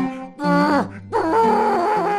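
A man's wordless singing in two gliding, drawn-out phrases with a short break between them, over sustained low accompanying notes.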